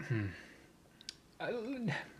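Speech only: a man's voice trailing off, a short pause with one small click about a second in, then a brief spoken hesitation sound near the end.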